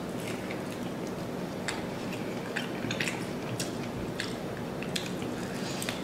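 A person chewing a mouthful of crispy deep-fried bone-in chicken wing close to the microphone, with scattered small crunches over a steady hiss.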